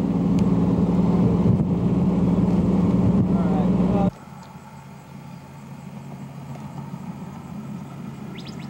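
Vehicle engine drone and road noise heard from inside the moving vehicle, a steady low hum. It cuts off abruptly about halfway through, leaving a much quieter, steady outdoor background hiss.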